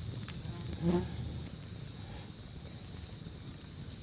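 A fly buzzing briefly past the microphone about a second in, against soft small clicks from toppings being handled in the pan.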